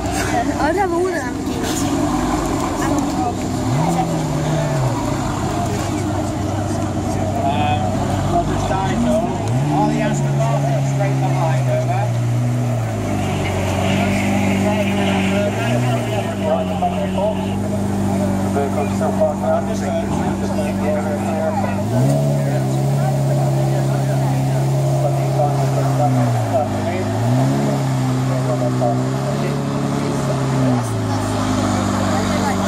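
Lamborghini Murciélago's V12 engine running at low speed as the car creeps forward, with a handful of short throttle blips that rise and fall in pitch, about four, ten, sixteen, twenty-two and twenty-seven seconds in. Crowd chatter underneath.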